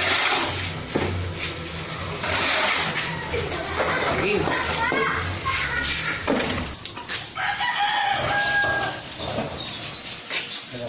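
A rooster crowing: one long, level call about seven and a half seconds in, over people's voices.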